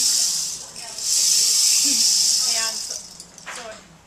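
Clay rainstick being tipped over, its loose fill running down through the nails inside in a high, even rushing hiss. It runs twice: the first pour ends just under a second in, and after a brief pause a second pour lasts about two seconds before dying away.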